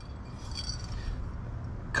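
Faint, light clinking of metal items shifting in a cardboard box as a copper wall plaque is handled, over a steady low outdoor rumble.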